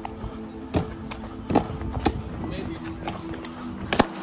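Music with held, sustained notes, and over it a few sharp taps of a parkour runner's feet running and landing on paving, the loudest near the end.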